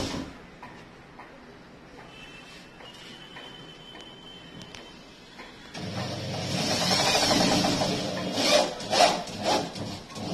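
Power drill driving a screw into a wooden wardrobe panel. The motor starts about six seconds in and runs steadily for a few seconds, then goes in short trigger bursts near the end.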